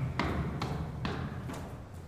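Footsteps climbing steel stairs in a concrete stairwell, about two a second, over a steady low hum.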